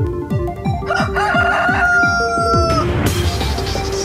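A rooster crowing sound effect, one long call of about two seconds starting a second in, over electronic intro music with a steady kick-drum beat. A rushing swell rises near the end.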